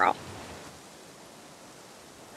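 The last word of speech cuts off right at the start, followed by a faint, steady hiss of background noise with no distinct events.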